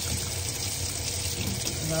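Sink faucet running, a steady stream of water falling into the sink.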